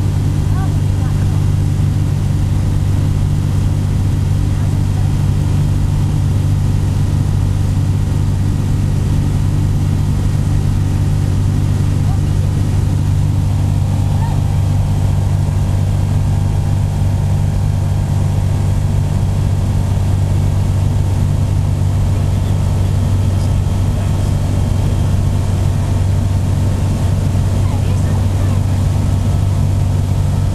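Steady cockpit drone of an EV97 Eurostar microlight's Rotax 912 engine and propeller in level cruise, with airflow noise over the canopy.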